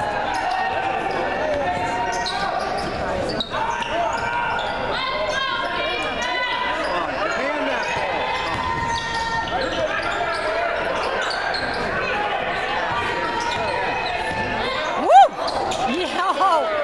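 Spectators' voices filling a gymnasium during a basketball game, with the ball bouncing on the hardwood court as play goes on. A brief loud shout rises and falls about a second before the end.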